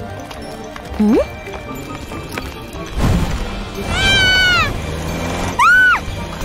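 Cartoon background music, with a short rising squeak about a second in and two high, drawn-out calls near the end that bend in pitch.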